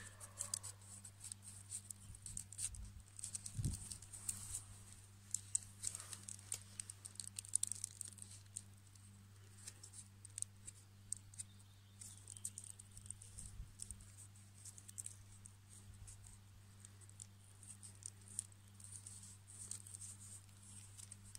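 Faint, irregular crackling and rustling of stiff birch bark strips being threaded through the loops of a woven knife sheath and pulled tight, over a steady low hum.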